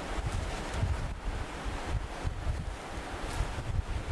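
Low, uneven rumble with a faint hiss: background noise picked up by the lectern microphone.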